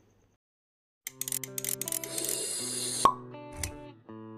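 Silence for about a second, then intro music with held notes and quick clicking ticks, building through a rising whoosh into a single sharp pop about three seconds in, the loudest moment.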